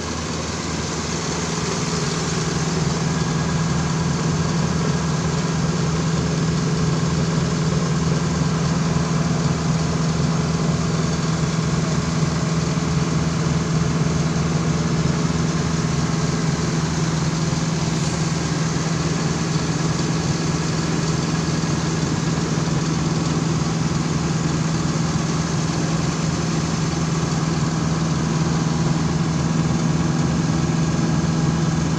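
A truck engine running steadily at a constant speed, driving the PTO hydraulic system of an ANFO bulk-mixing auger unit, which is under pressure. The low drone grows a little louder over the first few seconds, then holds level.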